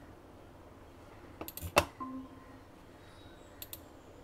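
A few quick computer mouse clicks about a second and a half in, the last one loudest, followed by a brief faint tone and two small clicks near the end, over faint room hiss.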